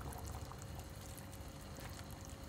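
Lentils in tomato sauce and broth being stirred in a pan with a wooden spoon: faint, steady wet sloshing and bubbling with small scattered clicks.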